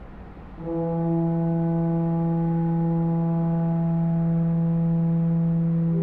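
Church pipe organ sounding one long, steady held note that starts about half a second in.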